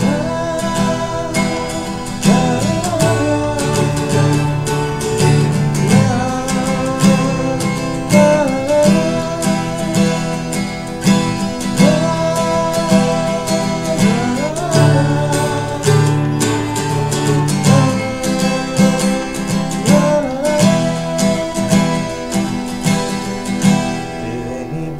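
Cutaway acoustic guitar strummed in a steady rhythm, with a man's voice singing a slow melody over it.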